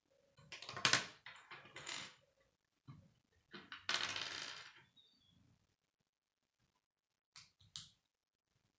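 Plastic K'nex pieces clattering and clicking as they are handled and set down on a wooden table. There is a rattling burst about a second in and another around four seconds, then three sharp clicks near the end.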